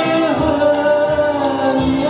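A man singing into a handheld microphone over an instrumental keyboard accompaniment, holding long notes that glide down in pitch.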